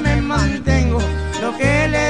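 Norteño corrido music in an instrumental passage: an accordion melody with wavering ornaments over plucked bajo sexto strings and a stepping bass line.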